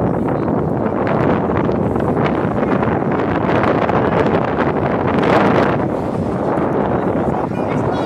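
Strong wind blowing across the phone's microphone, a loud steady rushing noise that swells briefly about five seconds in.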